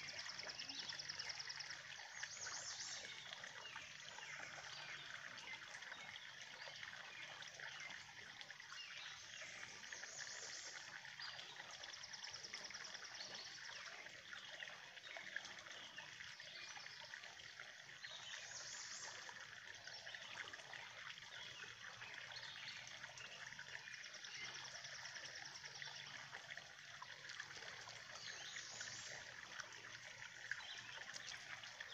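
Faint steady trickle of water, the pond's drain pipe spilling after rain. A bird's short high trill repeats every several seconds over it.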